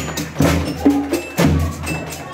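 A children's percussion ensemble playing a steady beat: bass drum thumps and snare drum strokes, with short ringing pitched notes struck on top, a little more than two strokes a second.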